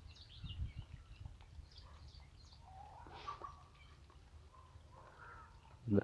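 Faint outdoor birdsong: small birds chirping, with a harsher, louder call about three seconds in. A low rumble runs through the first second.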